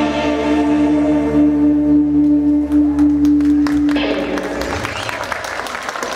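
A rock band's final chord held and ringing, with drum and cymbal hits over it, cutting off about four seconds in; then the audience applauds.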